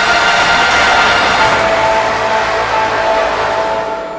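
A TV news channel's ident music. It plays long held tones with a bright, airy swell about a second in, and begins to fade near the end.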